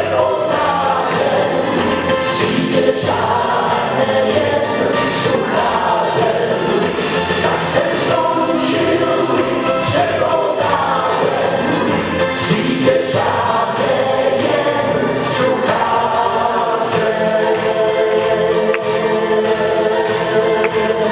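A man singing a song into a handheld microphone with musical accompaniment, heard through the hall's amplification.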